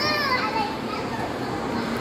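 Young children playing: a child's high-pitched voice calls out and falls in pitch at the start, then fainter child chatter over the steady background of a large hall.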